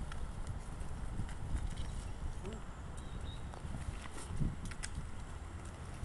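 Handling noise from a hand-held camera sweeping over the grass: a steady low rumble with scattered light clicks and knocks, and one slightly louder bump about four and a half seconds in.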